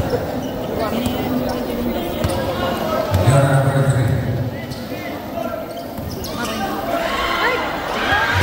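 A basketball bouncing on an indoor court under crowd chatter and shouts that echo in a large gymnasium, with a loud low drone for over a second about three seconds in.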